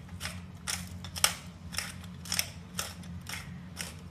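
Hand pepper mill grinding black pepper, its ratcheting crunch coming in short twists about twice a second.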